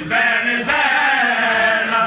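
A noha, the Shia mourning lament, chanted by men's voices in a long, wavering held melodic line.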